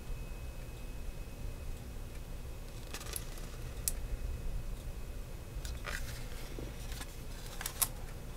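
A handful of faint clicks and taps from a diecast model car's plastic display base being handled and turned in the hands, with a sharper pair of clicks near the end, over a low steady hum.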